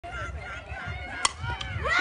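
A softball bat striking the pitched ball once, a single sharp crack about a second in, amid people shouting, which swell louder near the end as the hit goes into play.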